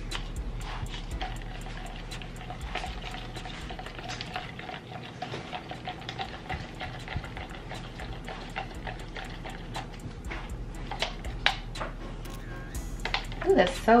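A stir stick scraping and tapping round the inside of a plastic cup of thick epoxy resin mixed with glitter, a run of small repeated clicks and scrapes.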